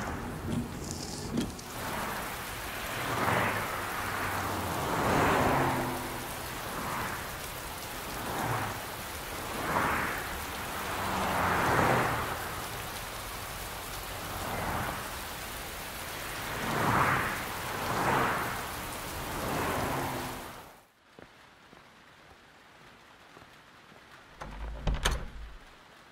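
Heavy rain falling steadily, swelling and easing every second or two, then cut off sharply about 21 seconds in. A low thud comes near the end.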